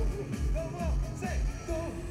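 Live concert music over a stage sound system: a heavy bass beat under short swooping melody notes, with a held note coming in near the end.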